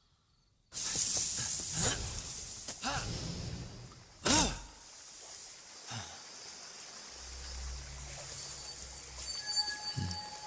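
Animated-film sound effects: a sudden hissing rush breaks in just under a second in, followed by several sweeping whooshes. The loudest and sharpest comes about four seconds in, and the sound then settles into a low rumble.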